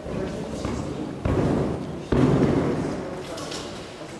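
Two heavy thumps of a gymnast's feet striking a sprung floor during a tumbling pass, about a second apart, each ringing on in the large hall.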